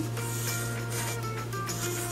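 Graphite pencil scratching on paper in quick sketching strokes, with soft background music underneath.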